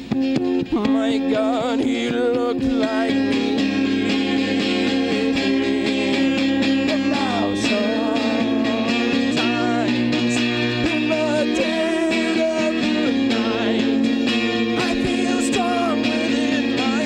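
A man singing with a wavering voice over a twelve-string acoustic guitar played steadily.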